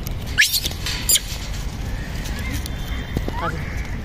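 Two short, high-pitched squealing calls that sweep upward, under a second apart, from rhesus macaques.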